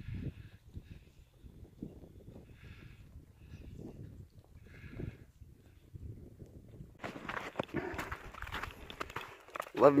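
Footsteps crunching in snow on a trail, with a low rumble of wind or handling on the microphone. The crunching gets louder and closer about seven seconds in.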